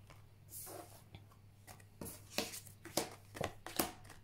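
Oracle cards being handled: drawn from the deck and laid down on a table, a series of soft slides and light taps.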